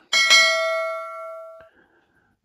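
Bell-like ding sound effect for a subscribe-reminder animation, struck twice in quick succession, then ringing and fading for about a second and a half before it cuts off.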